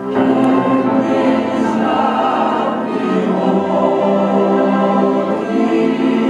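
A small string ensemble of violins and cello playing a slow worship piece in long, held notes, with a new, fuller phrase beginning right at the start.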